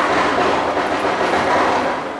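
Firecrackers going off in a loud, dense crackling burst that starts suddenly and holds for about two seconds before easing.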